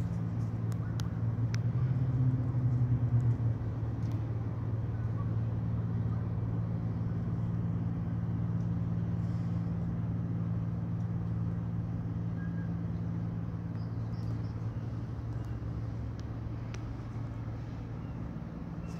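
A steady low mechanical hum, a little louder for a second or so about two seconds in.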